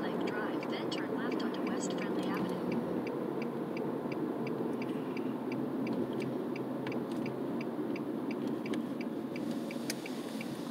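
Steady car road and engine noise heard from inside the cabin while driving. Over it, a regular ticking at about two and a half ticks a second, typical of the turn signal ahead of a turn.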